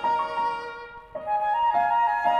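Concert flute playing a slow, sustained melodic line in contemporary classical chamber music: a held note, a brief break about a second in, then a few new notes.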